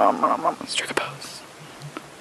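A person whispering 'nom nom nom' in quick repetition, followed by a few breathy hissing sounds about a second in.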